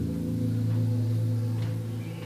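Yamaha DX7 Mark I FM synthesizer playing a slow ambient pad: a sustained low chord that changes right at the start and then holds steady, thinning near the end.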